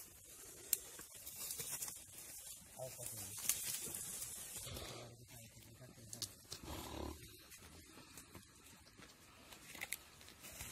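Komodo dragons tearing at a deer carcass: scraping and rustling in dry leaf litter, with a few sharp clicks and a heavier low burst about seven seconds in as the carcass is wrenched about.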